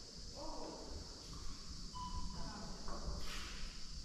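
Faint, indistinct voices in short snatches, over a steady high hiss and a low rumble.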